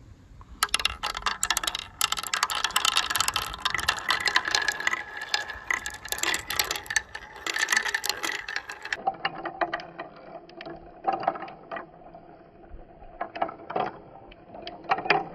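Glass marbles rolling round the wooden bowls of a handmade wooden marble run: a fast, rattling whir with many clicks as they knock together and fall from bowl to bowl. It starts about half a second in and turns quieter and duller about nine seconds in.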